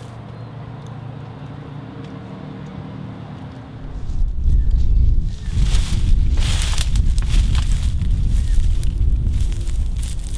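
A low steady hum, then from about four seconds in a loud low rumble of wind on the microphone, with rustling and crunching of blackberry brambles as a man walks along an old board laid flat over them.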